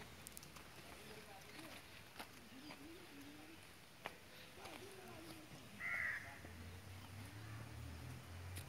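Faint outdoor background with distant voices and a few light clicks; a single short bird call rings out about six seconds in, and a low hum begins just after.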